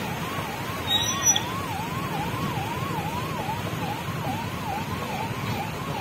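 Police vehicle siren sweeping up and down about twice a second, over the low rumble of traffic engines. A brief high-pitched tone cuts in about a second in.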